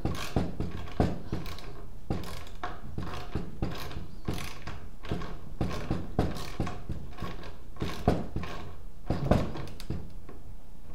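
Small hand socket ratchet clicking in short irregular runs as a nylon-insert self-locking nut is turned onto a bolt, the bolt head held by a screwdriver.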